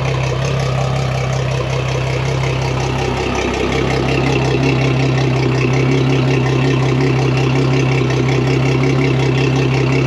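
Large outboard motor with its cowling off, idling steadily on the trailer. About three and a half seconds in, the idle note shifts slightly and the engine runs a little louder from then on.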